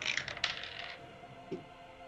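Polyhedral dice rolled for an attack, a quick clatter of small hard clicks that dies away about a second in.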